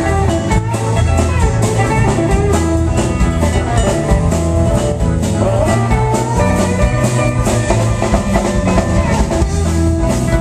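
Live band playing an instrumental passage: electric guitar over a drum kit keeping a steady beat.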